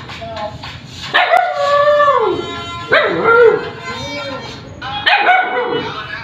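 Puppies vocalising while play-fighting: three drawn-out howling whines, each about a second long and falling in pitch.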